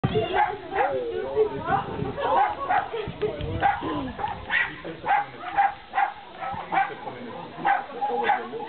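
A small dog barking in short, sharp yaps, repeated about twice a second through the second half, over people's voices.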